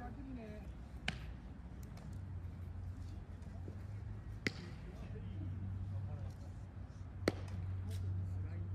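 Three sharp, short smacks of a baseball in play, about three seconds apart with the last the loudest, over a low steady outdoor rumble and faint distant voices.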